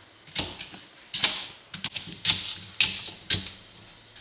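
Small kitchen knife cutting an apple into wedges on a stone countertop, the blade knocking on the counter about six times at uneven intervals of roughly half a second.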